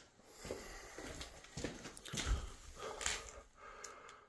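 Faint, irregular rustling and a few soft knocks, with one slightly heavier low thump a little past halfway: handling noise from a phone being moved about.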